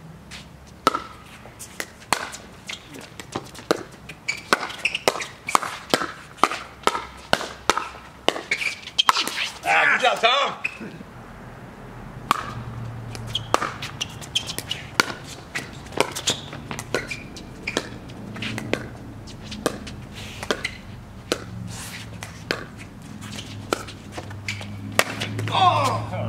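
Pickleball doubles rally: paddles striking the hollow plastic ball, a run of sharp pops coming about every half second to second, with players' voices breaking in briefly near the middle and at the end.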